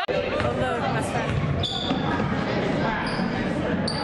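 Basketball game in a large gym: a ball bouncing on the hardwood court, a few short high squeaks of shoes on the floor, and spectators' voices, all echoing in the hall.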